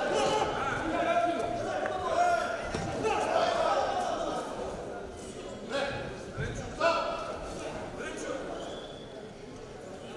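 Men's voices calling out in a large, echoing sports hall, with a few sharp thuds from the boxers' close-range exchange about six to seven seconds in.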